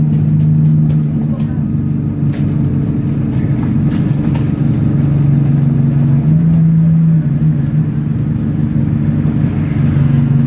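Bus engine and drivetrain heard from inside the moving passenger saloon: a steady low drone whose pitch shifts slightly about a second in and again around six to seven seconds in, over road noise.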